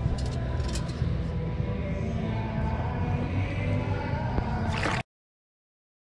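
Water and sand sloshing and rattling through a perforated metal Stealth beach scoop as it is shaken and sifted at the water's edge, over a low rumble. The sound cuts off abruptly about five seconds in.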